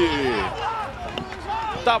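Speech: a man's commentary trailing off in a falling tone, then fainter, higher-pitched voices until his commentary resumes near the end.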